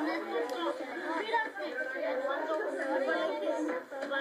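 Many children talking at once in pairs: overlapping classroom chatter.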